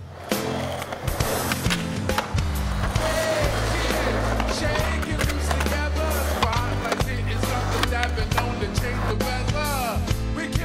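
Skateboard wheels rolling on concrete, with sharp clicks of the board, under loud band music that has a steady bass line.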